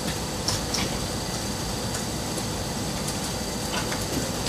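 A few scattered keystrokes on a laptop keyboard over a steady hum of room noise.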